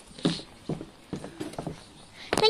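Hens giving a series of short, low clucks, about five in two seconds.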